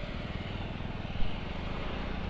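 Motorcycle engine running steadily at cruising speed, a fast even pulse low down under the rush of wind and road noise, with one brief louder blip about a second in.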